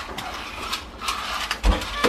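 Small plastic toy police car being rolled and knocked about on a tile floor: its wheels and gear mechanism click and rattle, with a louder knock about three-quarters of the way through.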